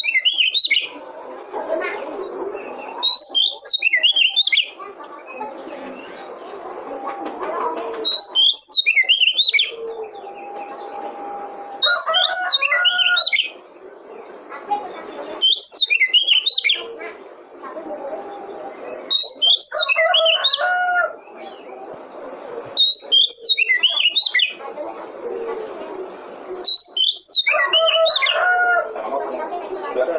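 Oriental magpie-robin (kacer) singing the same short, loud, quick-noted song phrase over and over, about once every four seconds, eight times, with quieter sound between the phrases. It is a looped lure song used to provoke a caged male kacer into singing.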